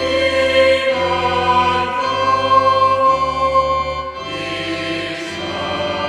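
A choir singing a Christmas song over a sustained accompaniment, the bass note changing about once a second.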